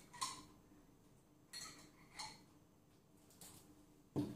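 A few faint clicks of a metal spoon against a glass jam jar as jam is scooped out.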